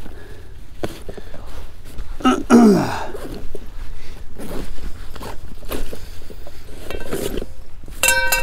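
A fabric backpack being rummaged through by hand: rustling cloth and small knocks and clicks of items being shifted about. There is a brief voice sound falling in pitch about two and a half seconds in.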